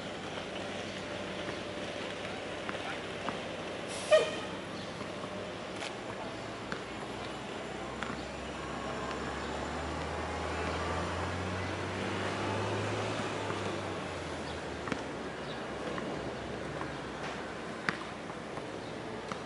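Street traffic outdoors: a heavy vehicle's low rumble swells and fades between about eight and fourteen seconds in. A short, sharp, loud sound comes about four seconds in.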